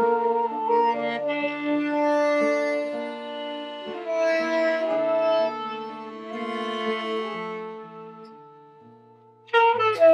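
A live acoustic quartet of two saxophones, accordion and guitar playing slow, held chords. The sound thins out and fades almost away, then several instruments come back in loudly just before the end.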